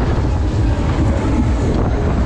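A Superbowl fairground ride running at speed, heard from a rider's car: a loud, steady low rumble with a rush of air over the microphone.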